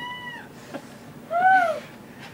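A cat meowing twice, each meow rising and then falling in pitch: one right at the start and another just past the middle.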